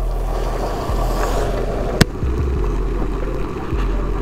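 Yamaha NMAX scooter under way on a wet road: steady engine hum and wind rush on the camera microphone, with one sharp click about halfway through.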